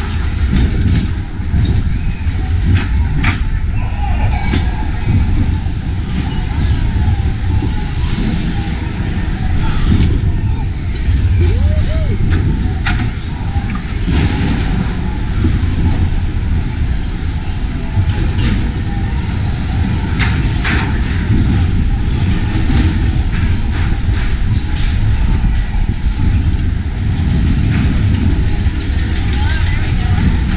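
Spinning wild-mouse roller coaster car running along its steel track: a steady rumble of wheels and wind on a ride-mounted camera's microphone, with sharp clacks from the track every few seconds.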